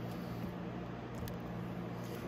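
Steady low machine hum in the background, with a faint click or two about a second in as battery tester clamps go onto the terminals.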